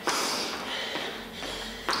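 A short, forceful breath out at the start, then quieter movement sounds of trainers on a hard floor, and a short sharp tap near the end.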